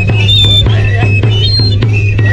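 Andean festival music: a drum beaten in a steady beat, with a high, whistle-like pipe melody over a steady low drone.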